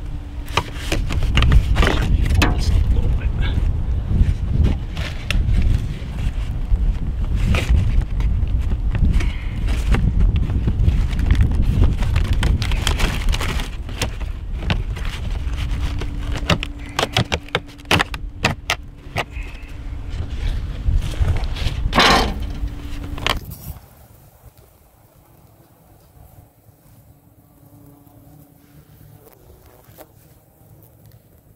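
Vinyl soffit panels rattling and clicking as gloved hands push and snap them back into place under the eave, over a steady low rumble. The noise stops abruptly about three-quarters of the way through.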